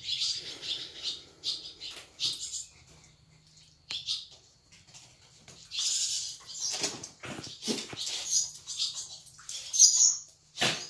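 Small birds chirping in quick, repeated high notes, with a lull a few seconds in before they pick up again. A few soft knocks and rustles come in the second half, over a faint steady low hum.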